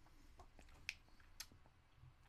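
Near silence with faint wet mouth clicks from licking and sucking a hard candy cane, two sharper clicks about a second and a second and a half in.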